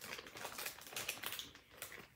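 Clear plastic poly bag crinkling as it is handled: a string of short, irregular crackles.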